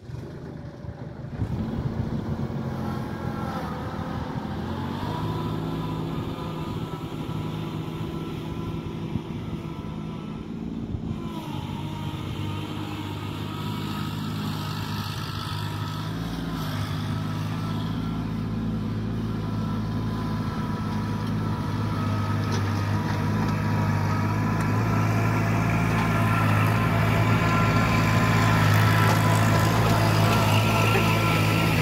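Kubota compact tractor's diesel engine running under load while pulling a disc harrow through the soil. The engine revs up a few seconds in, then runs steadily and grows louder toward the end as the tractor comes close.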